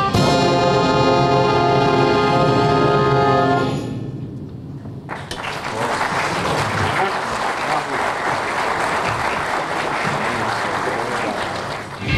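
School marching band's brass section holding a final chord that dies away after about four seconds, followed about a second later by steady audience applause.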